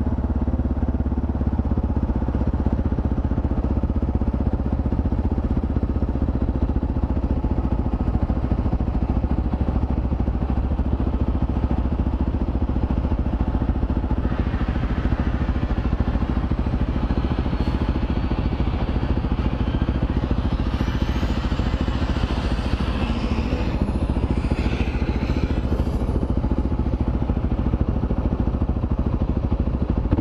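Motorcycle engine idling steadily, heard from the rider's seat while queued in slow traffic. About halfway through, a rush of noise from other traffic rises over it.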